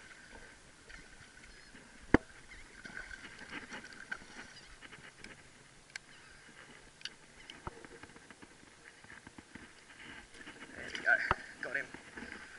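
A hooked snook being fought at the surface: faint water splashing, with a loud sharp knock about two seconds in and another near the end from handling the rod and reel, over a steady high-pitched drone.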